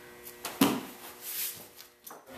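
A cardboard shipping box being handled: a thump about half a second in, then a short scraping rustle.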